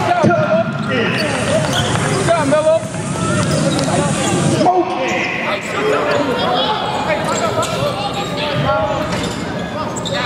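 Basketball being dribbled on a hardwood court during live play, the bounces heard among the voices of players and nearby spectators in a large echoing arena.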